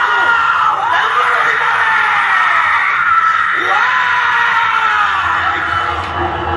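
A loud, drawn-out, high-pitched wailing scream, amplified through a PA system. Its pitch swoops down and back up twice and is held steady in between, with music underneath.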